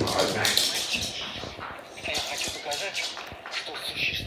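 Corgi claws clicking and scrabbling on a hard floor as the dogs play, a scatter of short sharp ticks.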